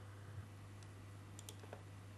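A few faint, sharp clicks of a computer mouse's buttons, clustered in the second half, over a low steady room hum.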